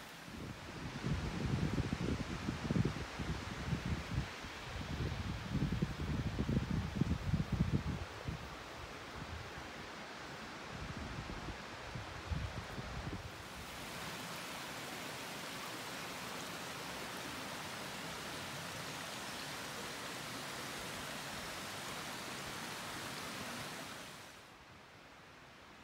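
Wind buffeting the microphone in irregular gusts for the first eight seconds or so. From about halfway on, a steady, even rushing noise takes over and cuts off suddenly at the end.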